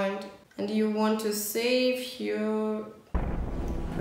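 A woman's voice holding a few long notes at different pitches. About three seconds in, the film soundtrack cuts in suddenly, a dense rumbling noise with music.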